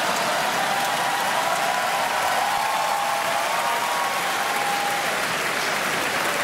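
Audience applauding steadily after a punchline, with a few voices cheering over it.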